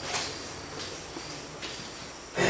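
Quiet room tone with a faint low hum and a soft brief noise just after the start.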